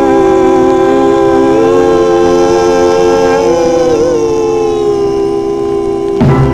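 Closing held harmony chord of a 1950s doo-wop vocal group on a 78 rpm record, several voices sustaining one long chord that steps up slightly about two seconds in and wavers near the middle.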